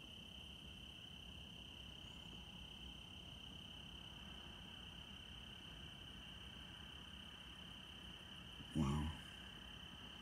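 Faint, steady cricket trill over a low rumble. A man says 'wow' near the end.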